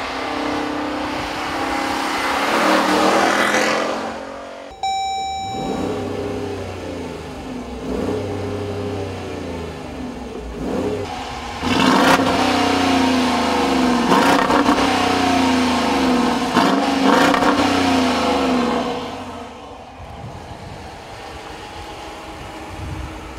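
Dodge Durango R/T's 5.7-litre Hemi V8 exhaust: the engine note climbs under acceleration, then is revved again and again, rising and falling with each rev and loudest in the second half. It drops to a quieter, steady run for the last two seconds.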